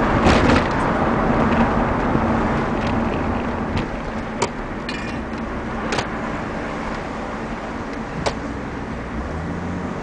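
Toyota Soarer's turbocharged 1JZ-GTE inline-six, heard from inside the cabin. It is loudest at first and eases off over the first few seconds, then settles to a lower, steady note near the end, with a few sharp clicks along the way.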